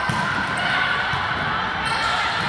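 Steady, echoing din of an indoor volleyball match in play: voices and court noise blending in a large hall.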